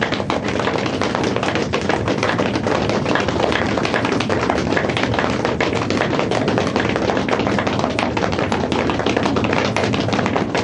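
Audience clapping: a dense, steady patter of many hands applauding at the close of a performance.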